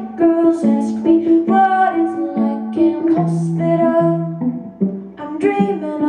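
Hollow-body electric guitar played live, picked notes and chords changing every half second to a second, with a woman's singing over it.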